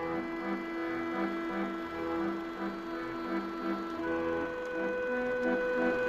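Instrumental opening-title theme music: held notes over short low notes repeating about twice a second, with the chord changing about four seconds in.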